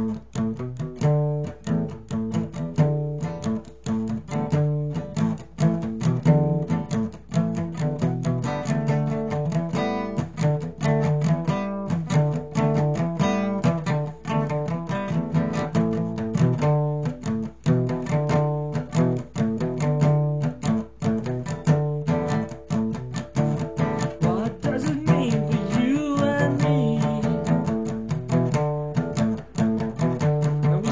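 Acoustic guitar strummed in a steady rhythm, with a man's singing voice coming in over it near the end.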